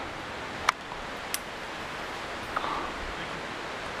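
Steady outdoor background hiss on a forest trail, with two short sharp clicks about a second in and again about half a second later.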